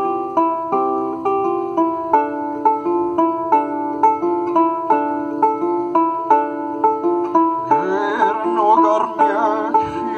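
Kravik lyre plucked in a steady repeating pattern of about two notes a second over ringing lower strings. A man's singing voice comes in near the end, wavering in pitch.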